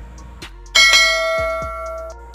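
A bell chime sound effect struck once about three-quarters of a second in. Its bright ringing tones slowly fade out, over faint background music.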